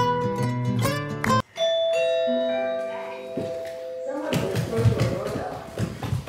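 A short plucked-string music sting, cut off about a second and a half in, then a doorbell chime: several ringing tones struck one after another that fade over about two and a half seconds. Room noise and voices follow near the end.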